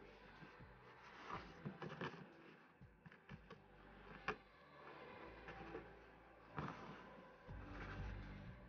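Faint rustling and light ticks of fingers handling braided cotton cord and jute twine while tying a knot, with one sharper tick about four seconds in.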